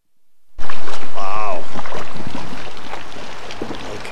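Dinghy under way on the water: a loud, steady rush of noise that cuts in suddenly about half a second in and slowly fades, with a brief voice about a second in.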